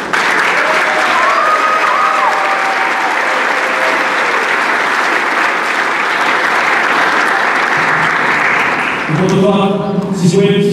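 Audience applauding, breaking out suddenly and lasting about nine seconds, with one high call rising and falling over it near the start.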